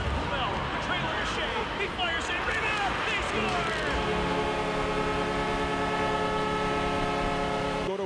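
Arena crowd noise and shouting, then an arena goal horn blowing one long steady blast from about three and a half seconds in, signalling a home-team goal; it cuts off abruptly at the edit.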